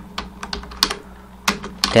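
Typing on a computer keyboard: irregular key clicks, with a brief pause a little after the middle.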